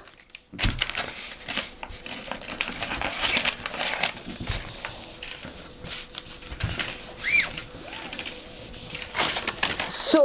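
Brown paper pattern pieces being unfolded and shifted over cotton fabric on a table: irregular paper rustling with small taps and knocks.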